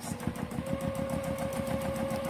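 Juki TL2010Q straight-stitch sewing machine running steadily while free-motion quilting with the feed dogs dropped. The needle stitches in a fast, even rhythm over a steady motor whine that settles about half a second in.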